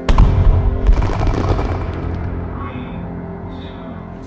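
A sudden loud bang at the start, followed by a dense crackle of many small pops that dies away over about two seconds, over a sustained musical drone.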